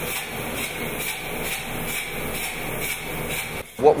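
Spray foam gun hissing steadily as it sprays closed-cell polyurethane foam insulation, with a faint steady tone in the hiss, cutting off shortly before the end.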